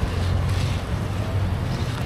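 Wind rumbling steadily on the microphone, with a car driving past.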